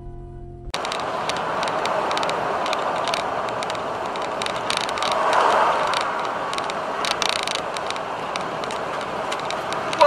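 Steady vehicle and road noise with scattered clicks, swelling about five seconds in. A held musical tone cuts off abruptly just before it.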